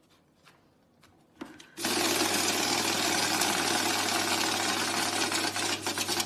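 Banknote counting machine running, feeding a stack of 50-euro notes through with a steady whir over a constant low hum. It starts about two seconds in, after a few light ticks of the notes being handled.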